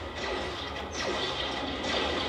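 Sound effects of a TV action scene playing in the room: a steady rumbling noise with faint music underneath.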